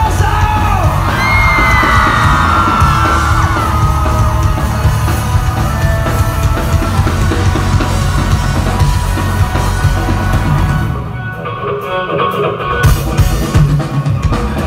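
Live rock band playing loudly, with drum kit and bass, and a voice yelling and singing over it in the first few seconds. The music thins out briefly about eleven seconds in, then comes back.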